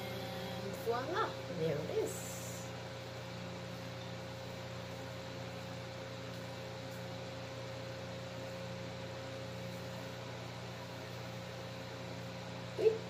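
A steady low electrical hum throughout, with a brief wordless voice sound about one to two seconds in.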